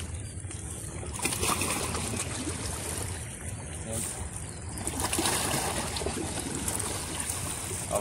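Steady outdoor noise of sea water lapping and splashing, with no distinct shot or impact standing out.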